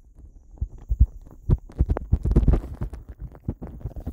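Irregular low thumps and rumbling close on the microphone, with scattered faint clicks.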